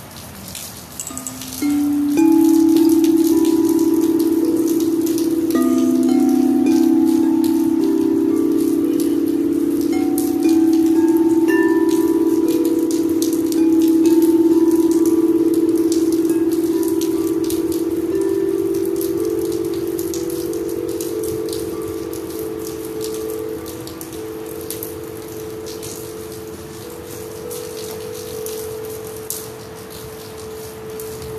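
Two crystal singing bowls played with a mallet, ringing in several overlapping sustained tones. The sound swells in steps over the first fifteen seconds, then slowly fades. Steady rain patters throughout.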